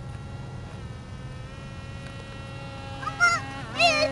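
Electric radio-controlled model airplane's motor and propeller whining in flight, a steady insect-like buzz that dips slightly in pitch about a second in. A voice calls out loudly near the end.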